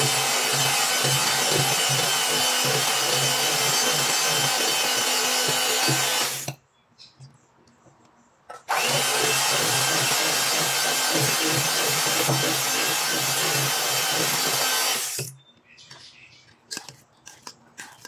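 Panasonic electric hand mixer running at a steady speed, its beaters whisking melted butter into cake batter. It stops about six and a half seconds in, starts again about two seconds later, and stops again about fifteen seconds in, followed by a few light knocks.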